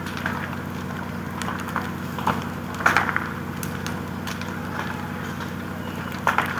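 Burning timber house crackling and popping, with scattered sharp cracks, the loudest about three seconds in, over a steady engine hum.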